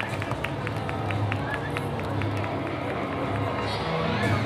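Crowd of spectators talking over a pulsing bass beat, with a run of sharp claps or ticks about three to four a second. A short burst of hiss comes near the end.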